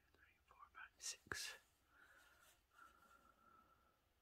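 Near silence with faint handling sounds of hand crocheting with a metal hook and yarn, and one sharp click about a second and a half in.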